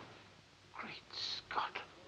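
Someone whispering a few breathy, hushed words, with a hissing 's' sound in the middle; the first part of the moment is nearly silent.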